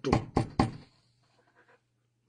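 A few sharp knocks in quick succession in the first second, then near silence.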